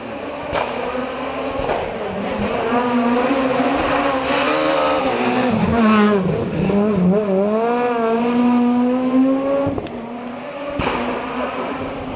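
Renault Clio rally car's engine at high revs approaching the corner, its pitch dropping sharply about halfway through as it brakes and downshifts, then climbing again as it accelerates away. It breaks off briefly near the end for a gear change before rising once more.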